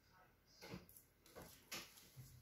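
Near silence, with three faint short ticks about 0.7, 1.4 and 1.7 seconds in.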